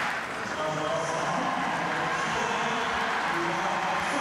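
Stadium crowd noise: the roar of reaction dies away in the first half second, leaving a murmur of many scattered voices.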